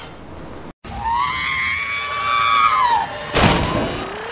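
A person's high-pitched scream, held for about two seconds and falling away at the end, followed by a loud crash.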